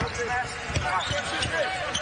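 A basketball bouncing on a hardwood court during live play, a few separate thuds, with faint voices from the arena.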